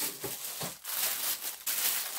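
Irregular crinkling and rustling of a parcel's paper and plastic wrapping being handled as it is opened.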